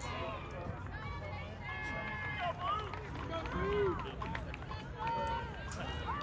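Several voices shouting and calling out from the sideline, unintelligible, over a steady low rumble.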